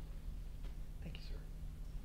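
A faint whispered voice, brief and soft, about a second in, over a steady low hum.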